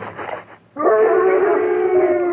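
A dog howling: after a brief lull, one long, steady howl starts just under a second in and is held.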